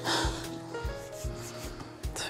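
Soft background music with a low pulsing bass beat and held tones, with a brief rustle just after the start.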